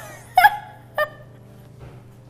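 Pool cue striking the cue ball and balls clicking, two sharp knocks about half a second apart: a miscued shot off a cue tip that has been wetted.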